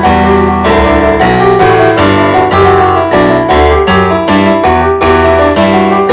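Digital stage piano played in free improvisation: full chords over low bass notes, with new notes struck several times a second.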